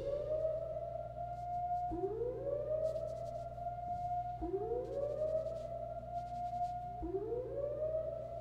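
Alarm siren wailing in repeated rising sweeps: each climbs in pitch and then holds for about a second, coming round about every two and a half seconds, three times.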